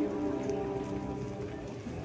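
Quiet passage of a live orchestra: soft sustained notes dying away over a faint, steady hiss.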